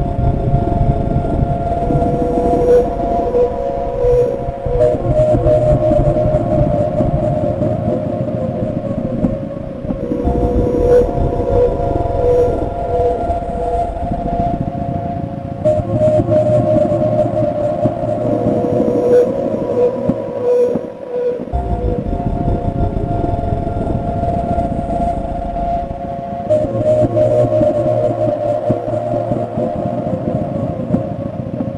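Experimental electronic music built from oscillator drones and vocoder: steady held tones in the middle register with a wavering pulse, over a low rumbling texture that shifts in sections every few seconds and drops out briefly a little past two-thirds of the way through.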